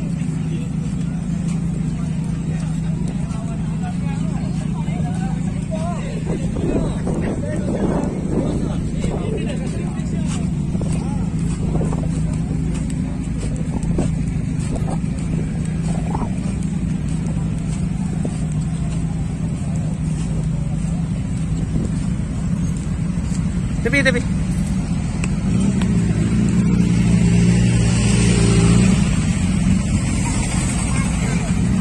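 Motorcycle engines running steadily under general crowd chatter. Near the end one motorcycle rides up close and its engine grows louder for a few seconds.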